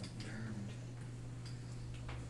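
A few faint, irregular light ticks over a steady low electrical hum.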